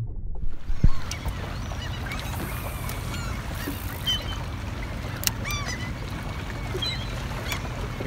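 Outdoor ambience on the water: many short bird calls sound in the background over a steady low rumble, with a single sharp click about five seconds in.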